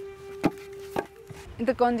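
Hand brick-making: sharp knocks about every half second as a brick mould is struck down on the ground to set out fresh clay bricks, over a steady held tone that stops shortly before the end.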